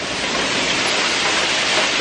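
Steady rushing noise of a NECO mixed-flow grain dryer and its grain-handling equipment running, rising slightly in level.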